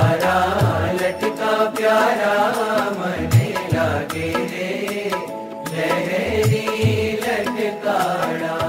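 Music of a Gujarati Swaminarayan devotional bhajan, in a passage without sung words: a melody with wavering, ornamented pitch over irregular low drum strokes.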